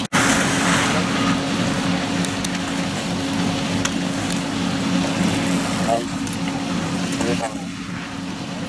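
Steady low machine hum under a noisy outdoor hiss, with a few brief distant voices; the sound drops out for an instant at the very start.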